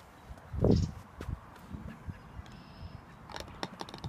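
A putter tapping a mini-golf ball, then a few faint clicks near the end as the ball drops into the cup.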